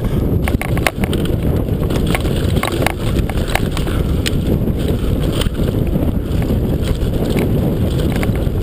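Wind buffeting the microphone of a rider-mounted action camera on a fast downhill mountain bike run, a constant low rumble. Over it the bike rattles and knocks many times as it hits bumps on the dirt trail.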